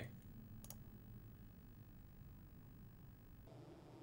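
Near silence: faint room tone, with a single soft mouse click a little under a second in.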